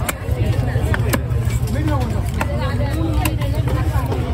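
A heavy fish-cutting knife striking through fish onto a wooden log chopping block: four sharp knocks about a second apart, over people talking and a steady low rumble.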